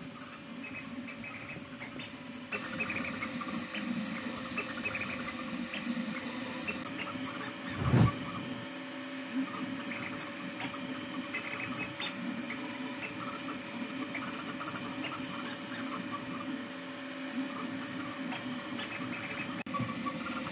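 Two Trees SK1 CoreXY 3D printer printing at high speed: stepper motors whining in quick, constantly changing tones over the steady hum of its fans, loud enough to shake the workbench it stands on. A brief thump comes about eight seconds in.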